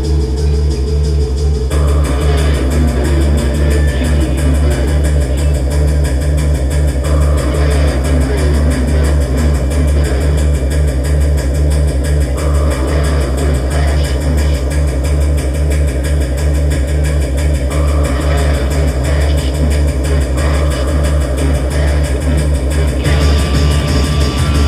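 Live electro-punk band playing loud: a heavy, steady low synth bass drone with electric guitar over it. The sound fills out about two seconds in.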